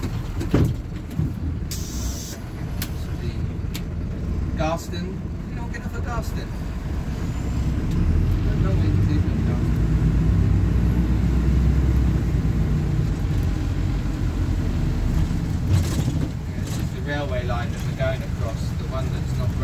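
Plaxton Beaver 2 minibus heard from inside the passenger cabin while driving: a steady low diesel engine and road rumble that builds louder as the bus picks up speed about halfway through, with a few brief squeaks over it.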